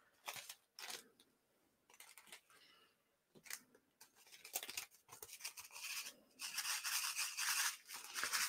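Faint handling of a cellophane bag filled with sequins and confetti: a few scattered crinkles and clicks, then a denser scratchy rustle over the last couple of seconds as the bag is folded and moved.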